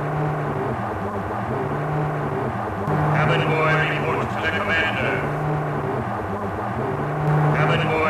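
Electronic sci-fi sound effect: a low hum that swells and dips in a steady pulse about every second and a half. A higher warbling chirp joins about three seconds in and again near the end.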